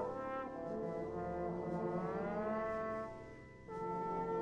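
British-style brass band of cornets, horns, euphoniums, trombones and tubas playing sustained chords. About halfway through, the upper parts slide upward in pitch. The sound then dies away briefly, and a full new chord comes in just before the end.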